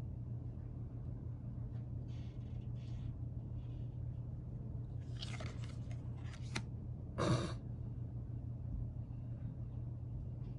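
Tarot cards sliding and rustling against each other as they are taken off the deck one at a time, in a few short soft bursts. The loudest comes about seven seconds in, over a steady low hum.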